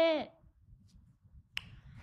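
A woman's high-pitched voice trails off, then after a quiet gap a single sharp click about one and a half seconds in.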